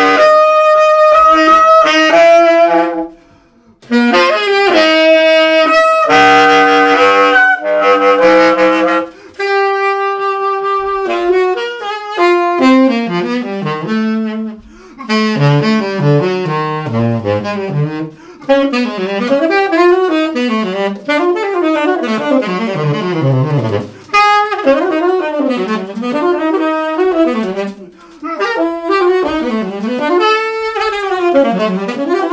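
Unaccompanied tenor saxophone improvising. It opens with long held notes, then plays quick runs that sweep up and down through its range into the low register, with short breaths between phrases.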